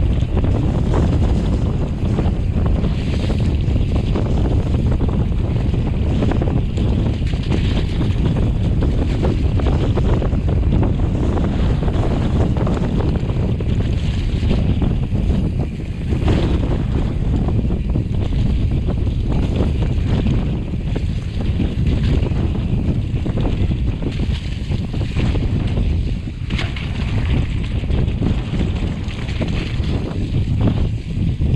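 Wind buffeting the microphone of a mountain biker's action camera, over tyre noise and frequent small knocks and rattles from the bike riding a rough, muddy grass track.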